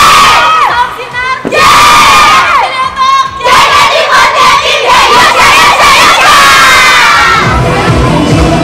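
A group of young women shouting a rallying chant together in a huddle, in three loud phrases, the last one long. Pop music with a steady beat comes in near the end.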